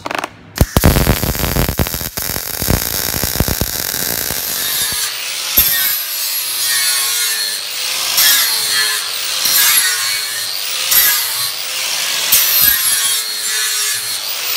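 MIG welder laying reinforcing welds on iron sheet, a dense crackle, for the first few seconds. Then an electric angle grinder dresses the welds on the steel plate, its motor note wavering as the disc bears on the metal.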